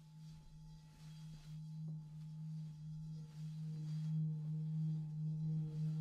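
Large brass singing bowl sung by rubbing a suede-wrapped wooden mallet around its rim: a steady low hum that swells in loudness, with higher overtones joining about halfway through.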